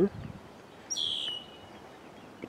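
A bird's single chirp about a second in: a whistled note that slides down in pitch and holds briefly.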